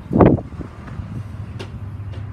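A single thump inside the van's metal cargo area about a quarter second in, then a steady low hum of background noise.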